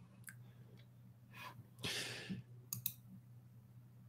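Faint clicks over a low steady hum: one click just after the start and two sharp clicks in quick succession about three seconds in, with a soft breathy rush around two seconds.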